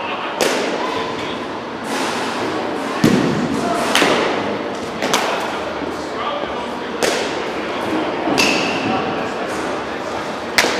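Bats striking baseballs during batting practice in an indoor batting cage: about seven sharp cracks, one every second or two, each ringing briefly in the large hall, over background voices.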